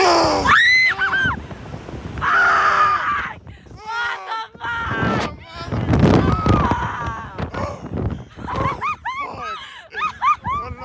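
A young man and woman screaming and laughing as a slingshot ride launches them into the air: high shrieks in the first second or so, a long scream about two seconds in, then breathless laughter and whoops.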